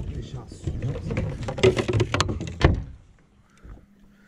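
Several sharp knocks and bumps of fishing gear and feet on a carpeted boat deck, mixed with brief voice sounds, as a traíra is being brought to the landing net. It falls quiet for about the last second.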